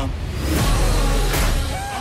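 A 1/7-scale brushless electric RC truck speeding past, a rush of motor and tyre noise that swells about half a second in and eases near the end.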